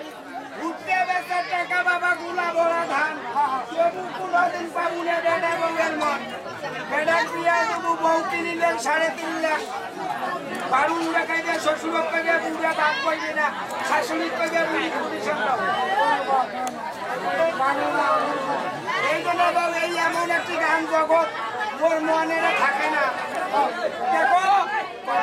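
Speech only: men's raised voices in stage dialogue, continuous and animated, with crowd chatter behind.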